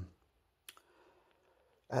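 A single short, sharp click a little under a second in, between a man's words.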